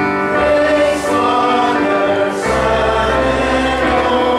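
A church congregation singing a hymn together with instrumental accompaniment, sustained notes changing chord every second or so over a held bass.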